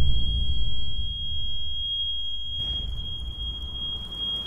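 Low rumble of an explosion dying away under a steady, high-pitched ringing tone: the film sound effect of ears ringing after a bomb blast.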